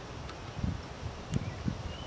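A few soft knocks and a faint click from a vintage Lisle cylinder ridge reamer as its centre bolt is tightened by hand, expanding the roller arms against the cast iron cylinder wall, over outdoor background noise.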